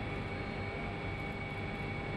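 Steady ambient hum of a nuclear power plant's turbine hall: an even machinery noise with a few faint steady tones in it.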